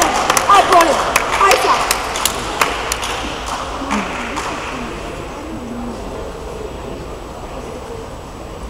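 Spectators' voices and sharp scattered claps or knocks in a large hall, dying away over the first three seconds into a low background murmur.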